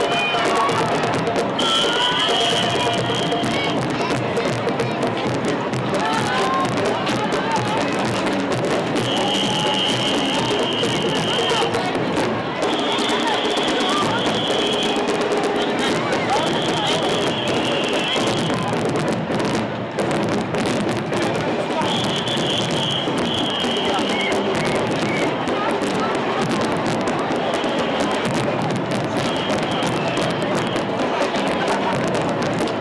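Marching band music with percussion in a noisy street crowd with voices. A shrill high tone sounds in blasts of about a second and a half, every few seconds.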